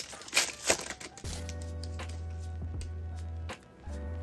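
Foil wrapper of a Donruss Optic basketball card pack crinkling and crackling as it is torn open and the cards are pulled out. From about a second in, quiet background music with a steady bass line carries on under a few light crinkles, and it drops out briefly near the end.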